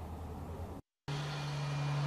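Faint low outdoor hum, broken about a second in by a brief dropout to total silence. It then gives way to a louder, steady machine drone with one strong low pitch and no change.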